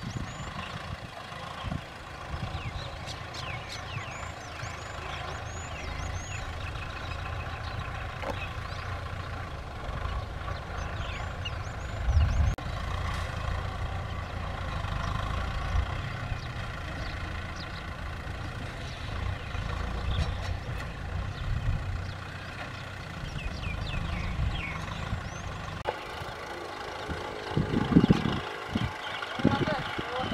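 Kubota M6040SU tractor's four-cylinder diesel engine running steadily under load as it pulls a disc plough through the soil, with a brief low thump about halfway through. Birds chirp now and then over the engine.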